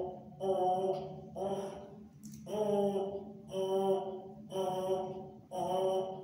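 Brass instrument mouthpiece buzzed on its own: a string of about six short buzzy notes on one pitch, roughly one a second, each cut off before the next.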